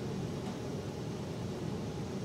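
Steady room noise: an even hiss over a low hum, with no distinct events.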